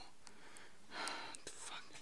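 A man whispering under his breath: breathy, unvoiced muttering, strongest about a second in, with a few faint clicks.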